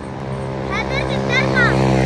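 A motor vehicle's engine running with a steady low hum that grows slightly louder, under a boy's voice reciting verse.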